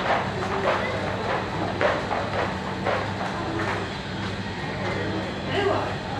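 Steady low electrical or ventilation hum with indistinct voices and short breathy noises coming and going every second or so.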